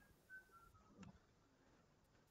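Near silence: faint room tone, with a few short faint high chirps stepping down in pitch near the start and a soft click about a second in.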